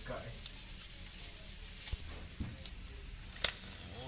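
Fish sizzling and crackling on a charcoal grill, a steady hiss with scattered pops, and a couple of sharp clicks of metal tongs, one about half a second in and one near the end.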